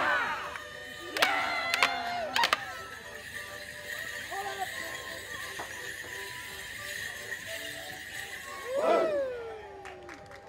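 Morris dancers' wooden sticks clashing four times in quick succession, with loud falling shouts at the start and again near the end. In between, a dance tune plays faintly.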